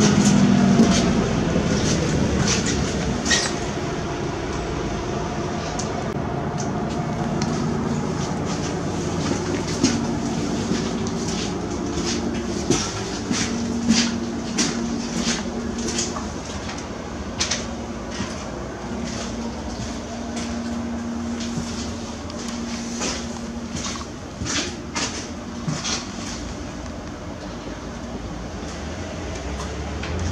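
Cabin noise inside a MAN Lion's City G articulated city bus under way: a steady engine hum with road noise, easing gradually over the stretch, and scattered sharp clicks and rattles from the interior fittings.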